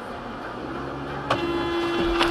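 Steady road and engine noise inside a moving car, then a little over a second in a car horn starts sounding, one steady blare that carries on, as an SUV cuts across the car's path.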